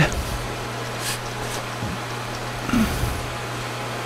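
Metal lathe running steadily with its chuck spinning, a constant hum. There are a couple of faint clicks about a second in.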